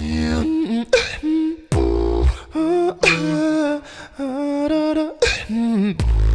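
A man beatboxing a cappella, deep bass-kick sounds and sharp clicks, with a vocal melody over it. The bass hits fall near the start and around two seconds in, then held, wavering vocal notes carry the middle of the stretch.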